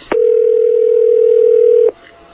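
A steady telephone line tone, one mid-pitched tone held for nearly two seconds, switching on and off abruptly.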